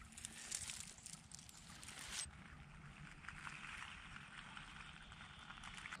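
Near silence: a faint outdoor background with a few soft rustles and clicks in the first two seconds as the leaf litter around a toy doll is handled, then only a faint steady hiss after an abrupt change in the background about two seconds in.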